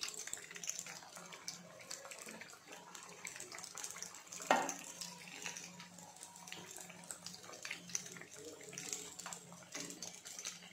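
Batter-coated chilli fritters deep-frying in hot oil: a steady crackling sizzle of bubbling oil as a slotted spoon turns them, with one louder knock about halfway through.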